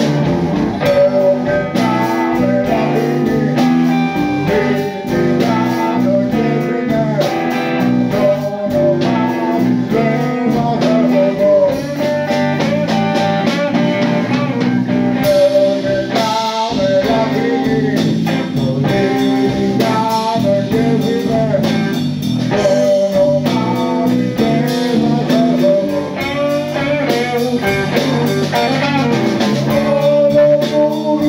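Live band jam: electric guitar playing over bass guitar and drum kit, a steady instrumental groove.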